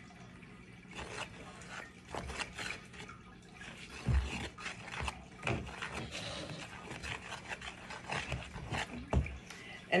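A spoon stirring a wet flour, salt, water and oil play-dough mixture in a plastic mixing bowl: irregular clicks and scrapes against the bowl, with a few duller knocks.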